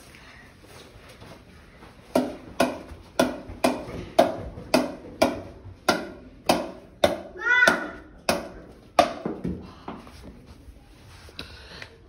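A plastic pickleball bounced again and again off a wooden paddle: a run of sharp, hollow taps about two a second for around seven seconds. A short vocal sound cuts in about halfway through.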